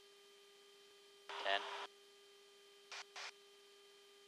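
Aircraft intercom feed: a steady electrical hum between transmissions, broken by a single short spoken range call ("Ten") and, about three seconds in, two brief bursts of hiss. No engine or wind noise comes through, only the intercom channel.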